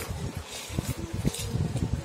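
Sheet of paper rustling and a plastic jar being handled against a plastic table top, with a few light knocks and low handling rumble.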